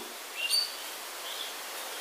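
Pause in speech with a steady faint background hiss. A small bird chirps briefly, high-pitched, about half a second in, and more faintly again near the middle.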